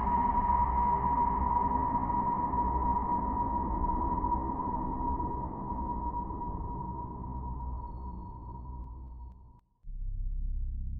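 Eerie sustained drone from a film soundtrack: one steady, high ringing tone over a low rumble. It slowly fades and cuts off shortly before the end.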